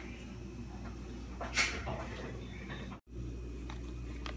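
Quiet kitchen room tone with a steady low hum, broken by one short, sharp noise about a second and a half in and a brief dropout to silence about three seconds in.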